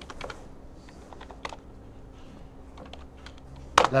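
Typing on a computer keyboard: scattered, irregular keystrokes, with one louder click near the end.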